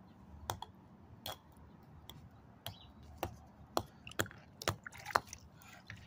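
A hammer tapping on a block of ice, about nine sharp, separate knocks at an uneven pace.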